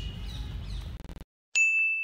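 Outdoor background noise cuts off abruptly about a second in. A moment later a single bright bell-like ding strikes and rings out, fading away over about a second.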